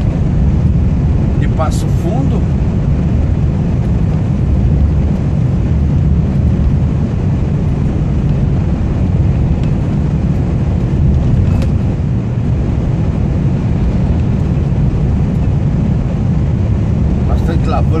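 Steady low rumble of a heavy truck's engine and tyres, heard from inside the cab while cruising on a highway.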